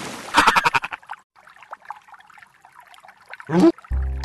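Cartoon sound effects: a quick rattling trill about half a second in, then faint scattered small sounds, and near the end a short, loud cry that rises steeply in pitch, just as a music chord comes in.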